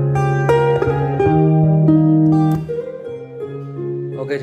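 A Vietnamese ballad's instrumental break, with a plucked-string melody, played back through a pair of Pioneer 30 cm full-range speakers and heard in the room. The music drops noticeably in level a little under three seconds in.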